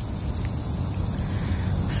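Air hissing steadily out of a car tyre around a nail lodged in the tread: a slow leak, under a steady low rumble.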